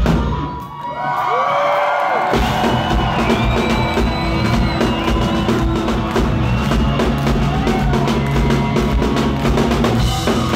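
Live metal band playing loud with drums, bass and electric guitar. The drums and bass drop out briefly about half a second in, leaving one held note, then the full band crashes back in a little over two seconds in and keeps playing.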